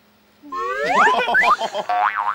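Cartoon-style comedy sound effect: about half a second in, a pitched tone glides sharply upward like a boing, then breaks into a quick run of short rising chirps.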